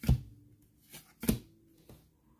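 Baseball cards being flipped through by hand: two short snaps of card sliding on card, one right at the start and one a little past the middle, with fainter slides between.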